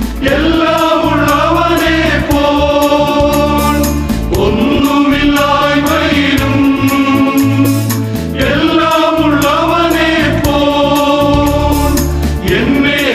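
Men's choir singing a Malayalam Christian hymn in long sustained phrases, accompanied by an electronic keyboard with a steady beat.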